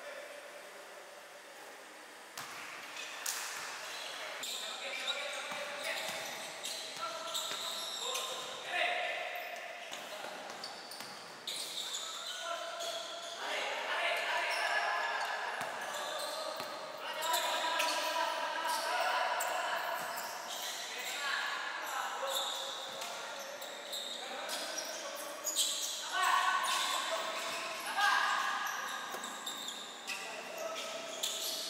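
Basketball bouncing on an indoor court during live play, with players' voices calling out, echoing in a large gym hall.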